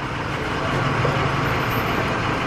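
A motor vehicle's engine running steadily: a low hum over an even hiss, the hum growing clearer about half a second in.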